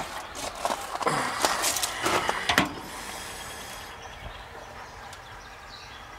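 Shoes shifting and crunching on loose pebble gravel: a few irregular scrapes and crunches in the first three seconds, then a quieter steady background.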